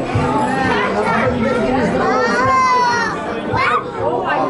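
Chatter of many overlapping voices, children's among them, with one high-pitched, drawn-out excited call about two and a half seconds in.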